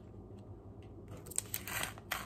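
Tape being peeled off a painted paper card: quiet at first, then about halfway through a small click and a short, soft rustle of tape and paper.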